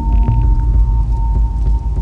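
Eurorack modular synthesizer patch playing a heavy low drone under a held high tone, with a lower note changing about a third of a second in.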